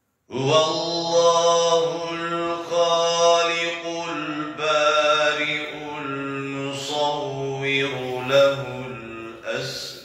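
A man's solo religious chanting: long, ornamented held phrases sung in one voice, starting a moment in after silence, with a brief pause for breath about four seconds in and another near the end.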